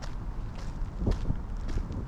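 Footsteps of a person walking on wet pavement, about two steps a second, over a low steady rumble.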